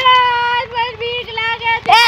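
A high-pitched voice crying out a long, drawn-out "hey": held steady for about half a second, then wavering and breaking into shorter cries.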